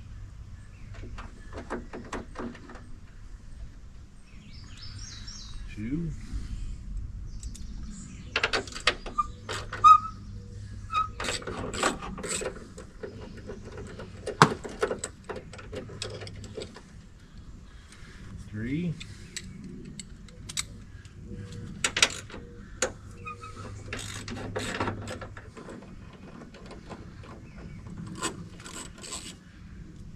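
Irregular clicks, clanks and rattles of hand tools and metal parts as the old side mirror is worked loose from the door of a 2000 Ford F-350, its mounting studs stuck fast to the body. A few sharper knocks stand out, about ten, fourteen and twenty-two seconds in.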